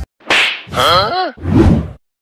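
A slap on the head: a swish and a sharp smack, with a short pitched cry bending up and down between them.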